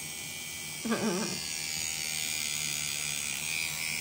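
Pen-style rotary tattoo machine running steadily with an even electric buzz as the needle works on skin. A short laugh comes about a second in.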